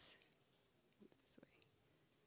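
Near silence: room tone, with a faint, brief whisper-like voice about a second in.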